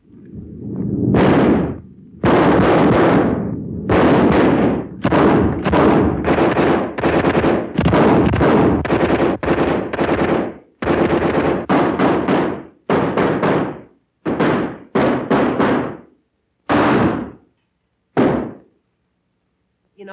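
Loud gunfire from a shootout on an old film soundtrack: a long string of shots, some fired in quick runs close together, thinning out to a few single shots with longer gaps toward the end.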